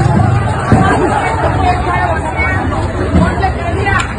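A dense crowd shouting and clamouring over one another at close range, many voices overlapping, with a sharp thump a little under a second in.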